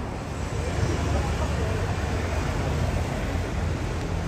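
Street ambience of a busy road: a steady low rumble of passing traffic, with faint voices in the mix.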